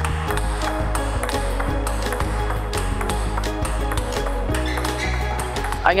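Table tennis ball being struck again and again with forehand loops and bouncing on the table: sharp clicks, about one or two a second, under background music with a steady bass line.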